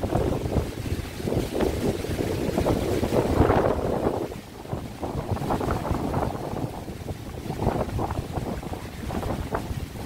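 Gusty wind buffeting the phone's microphone, with choppy surf washing onto a rocky shore beneath it, the wind of an approaching hurricane. The strongest gust comes about three and a half seconds in and eases soon after.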